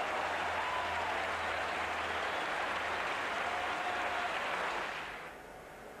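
Football stadium crowd cheering and applauding a goal, a steady roar of noise that fades away about five seconds in.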